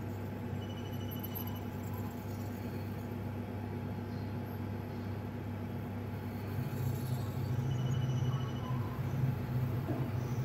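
Steady low machine hum from a micro EDM machine setup. It grows louder about six and a half seconds in, as a second, slightly higher hum joins.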